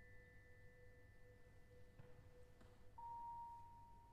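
Very quiet contemporary chamber-ensemble music: a few long, pure ringing tones held and slowly fading. A middle tone dies away about three seconds in, as a new, higher tone enters and rings on.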